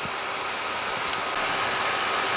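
Steady room-noise hiss with a faint, thin, steady whine under it; the hiss gets slightly brighter about a second in.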